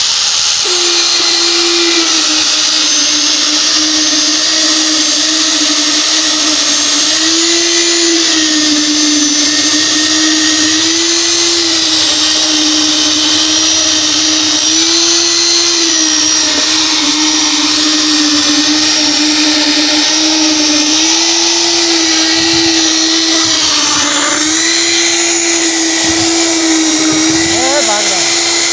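Electric needle (poker) concrete vibrator running continuously, its motor giving a steady whine whose pitch shifts slightly now and then as the vibrating needle is worked through fresh concrete to compact it.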